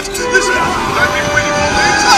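Cartoon sound effects: a steady, wavering electronic hum like a hovering UFO, with wordless cartoon-character vocal noises over it.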